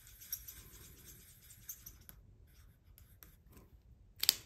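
Faint scratching of a felt-tip marker on paper as circles on a savings tracker sheet are coloured in, with a few light ticks.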